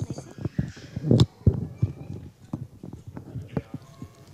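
Quick low hand-drum strokes, about five a second, with the loudest just after a second in, and voices faintly behind them.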